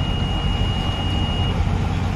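A steady low rumble with a thin, steady high-pitched tone over it that stops about one and a half seconds in.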